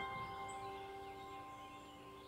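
Soft background music: a bell-like mallet note, glockenspiel or chime in tone, struck right at the start, rings out and slowly fades with the last of the preceding notes.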